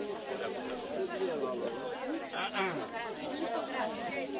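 A group of people talking over one another: mixed men's and women's voices in overlapping chatter.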